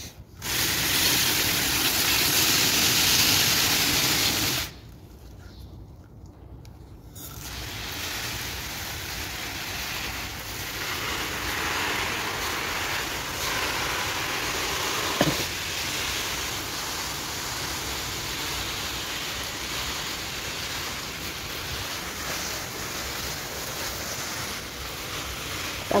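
Garden hose spray nozzle showering water onto plants, heard as an even hiss of spray on leaves. It is loud for the first four seconds, stops for a few seconds, then runs steadily and more softly to the end.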